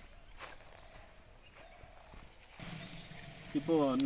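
Faint footsteps crunching on dry fallen leaves and grass, a few soft steps. A man's voice begins near the end.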